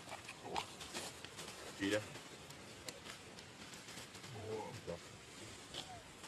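Dry leaf litter crackling in scattered small clicks as a baby macaque picks at it, with a few short low vocal sounds, the loudest about two seconds in.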